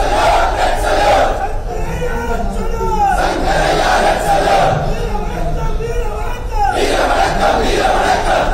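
A large crowd shouting slogans together in three loud rounds, one every three and a half seconds or so.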